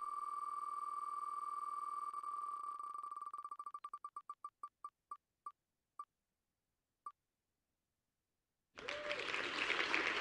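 Wheel of Names spinning-wheel tick sound effect: rapid clicks that blur into one buzzing tone, then slow to single ticks and stop about seven seconds in as the wheel comes to rest. Near the end, an applause sound effect plays as the winner is picked.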